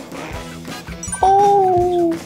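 Background music, with a loud drawn-out tone sliding slightly downward about a second in and lasting nearly a second, an edited-in sound effect.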